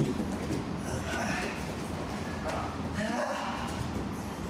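A person talking faintly in short phrases over a low, steady rumble.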